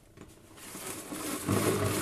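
Plastic lid of a salad spinner being pressed and seated onto its bowl, a rustling, scraping handling noise. It starts almost silent and grows louder in the second half.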